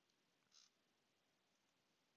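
Near silence: faint room tone, with one short, faint click about half a second in.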